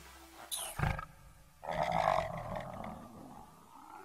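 A monster roar sound effect for an evil spirit, starting about a second and a half in and fading away, after a brief sudden sound just before it.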